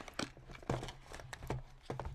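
A few scattered light clicks and taps from hands handling candy cane packaging on a table.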